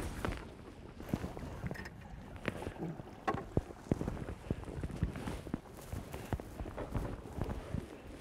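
Scattered knocks and clunks on an aluminium boat hull with light water sloshing as a salmon is held in the water at the stern.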